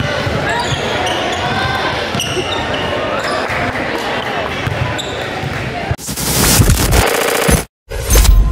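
Basketball dribbled on a hardwood gym floor, with players' and spectators' voices. About six seconds in, a loud whooshing noise effect takes over for about a second and a half, then cuts off suddenly.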